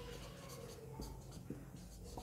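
Marker pen writing on a whiteboard: faint squeaks of the felt tip sliding over the board, with a few light taps as it lifts and touches down.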